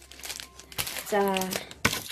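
Plastic chocolate-bar wrapper crinkling as it is handled and opened, with a sharp crackle near the end.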